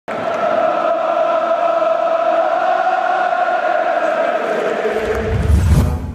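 Many voices holding one long chanted note, with a deep rumble swelling up in the last second.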